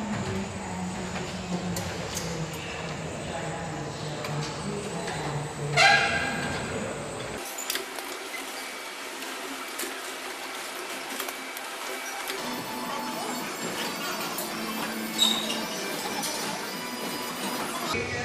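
Overhead rail conveyor of an automated warehouse running, with scattered clicks and clanks from the hanging carriers on their rails. A loud, briefly ringing metallic clank comes about six seconds in. The low rumble underneath drops out about seven seconds in.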